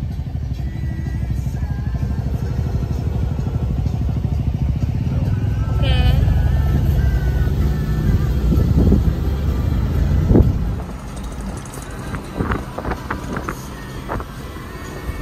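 Road and wind noise of a moving car heard from inside, a loud low rumble that grows and then dies down sharply about ten seconds in.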